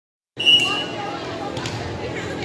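A referee's whistle blows a short steady blast, followed by voices and chatter echoing in a gymnasium. A couple of sharp knocks of a ball on the wooden floor come near the end.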